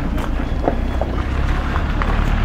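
Wind rumbling on the microphone, a steady low rumble with a faint haze of outdoor background noise over it.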